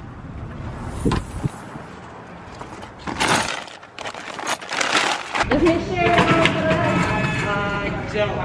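Car keys jingling and an insulated shopping bag rustling as they are handled, with a few light knocks. A person's voice takes over, louder, in the second half.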